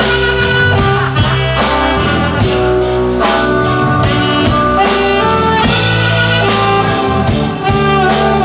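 Live band music led by a saxophone playing sustained melody notes, over electric bass guitar and a steady drum beat.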